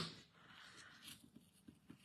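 Near silence, with faint rustling and a few soft ticks of paper card stock being pressed and handled.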